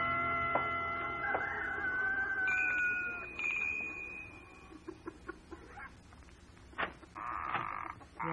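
A held music-bridge chord fades out over the first three seconds, then radio-drama farmyard sound effects follow: chickens clucking, with a few sharp taps near the end.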